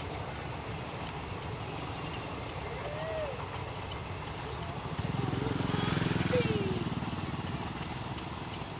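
Train running past in the distance with a steady low rumble. About five seconds in, a motor vehicle's engine grows louder, peaks and fades.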